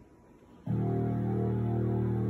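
A recorded song starting on the TV speakers: about two-thirds of a second in, a sustained chord comes in suddenly and holds steady.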